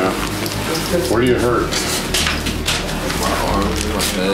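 Indistinct voices of people talking, mixed with rustling and handling noises.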